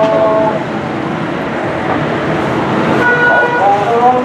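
Busy road traffic running steadily, with a long vehicle horn blast that cuts off about half a second in and a shorter horn toot about three seconds in.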